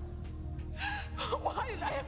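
Women's voices gasping and crying out in strained, wordless bursts during a physical scuffle, starting about three quarters of a second in, over a steady dramatic music bed.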